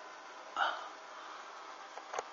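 Steady background hiss with one short hiccup-like sound from a person about half a second in.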